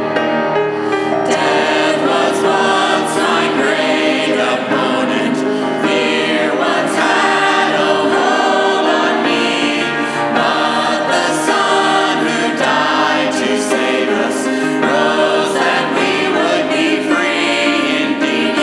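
Small mixed worship team of women's and a man's voices singing a hymn in harmony with grand piano accompaniment. The piano plays alone for about the first second, then the voices come in.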